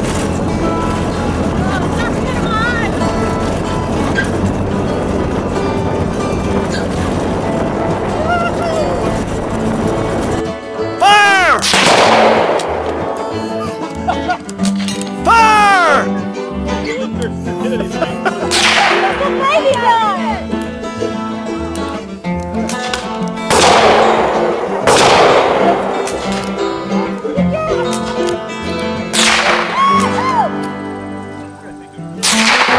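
A music track with, from about a third of the way in, a string of roughly eight gunshots from pistols and rifles, spaced one to four seconds apart, each with a ringing tail.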